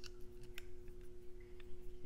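An Allen key engaging and tightening the set screw in a steel drill-extension coupler: a few light, sparse metallic clicks, over a faint steady hum.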